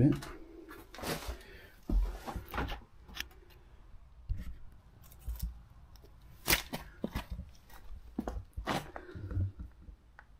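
Footsteps crunching and scuffing over rubble and broken boards, with scattered sharp clicks and knocks of debris shifting underfoot, in a small bare room.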